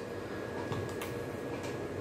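Quiet room tone with a few faint clicks, the clearest about a second in, from the metal-bodied CO2 pellet pistol and its small eight-shot rotary pellet magazines being handled.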